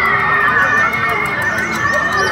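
Busy fair crowd: people's voices and chatter mixed with steady music playing over loudspeakers.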